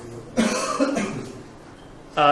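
A man coughing: one cough in two quick bursts about half a second in.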